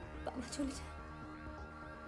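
A woman's short, wavering sobs, two of them in the first second, over sustained background film music.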